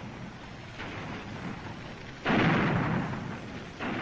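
Cannon fire: a single heavy boom about two seconds in that dies away over about a second and a half, over a steady hiss.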